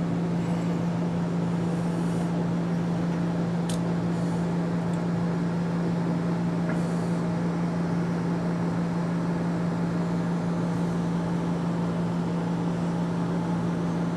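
Steady low hum with a hiss over it, unchanging throughout: background machine or electrical noise, with a faint click about four seconds in.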